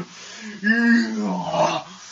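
A man making a drawn-out wordless vocal noise that rises and falls in pitch, starting about half a second in and stopping shortly before the end.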